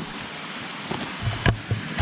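Steady rushing of a stream flowing close by, with a short click about one and a half seconds in.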